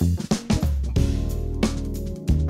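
Fusion band recording: the drum kit plays a quick snare and tom fill, then the band comes in about half a second later with a sustained bass line and chords under a busier drum groove.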